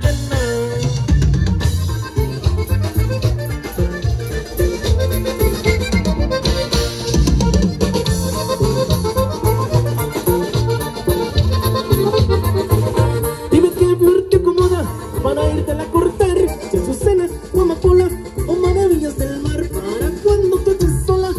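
Live norteño band music: an accordion plays the melody over a steady drum-and-bass dance beat. The accordion line comes forward more strongly about two-thirds of the way through.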